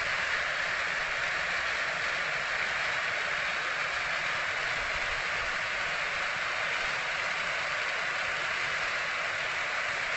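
A ring of firework fountains spraying sparks around a lancework heart set piece, making a steady hiss.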